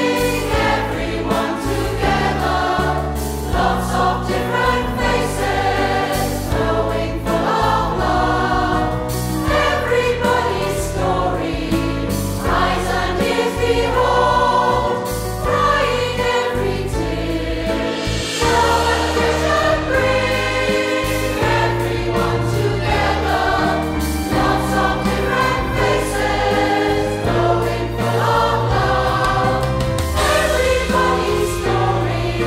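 A large mixed choir of women's and men's voices singing a song, continuously and at a steady loudness, over sustained low notes.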